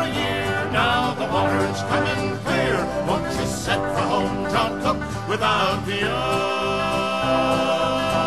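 Acoustic folk band playing an instrumental passage on guitars and banjo. A quick, moving melody gives way to long held notes about six seconds in.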